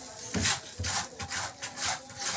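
Wooden paddle scraping thick cooked dodol around a large wok in repeated rasping strokes, about two a second, as the finished batch is scraped out of the pan.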